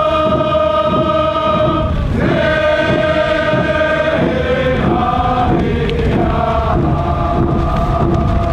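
A group of voices chanting a traditional ceremonial song in long held notes over a steady drum beat.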